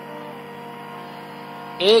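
A steady hum made of several held tones, unchanging through the pause. A man's voice starts near the end.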